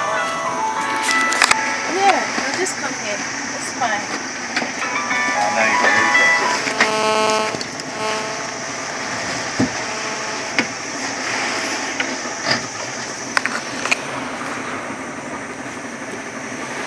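People's voices calling and talking, with one long held call about seven seconds in, over a steady hiss. Then the voices stop, leaving the steady hiss broken by a few sharp knocks.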